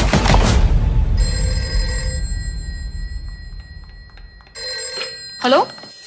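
A ringing tone starts about a second in, after voices and music, and dies away over about three seconds. A second ringing starts near the end, with a quick swoop of pitch down and back up just before it ends.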